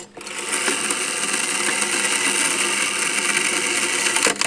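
The spring-wound gear mechanism of an original Zeno penny gum vending machine, whirring steadily as it runs through its vend cycle after a penny is dropped in. It starts a moment in and holds an even level, a sign that the mechanism operates correctly.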